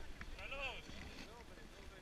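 Faint talk from people nearby, over a low rumble of wind on the microphone.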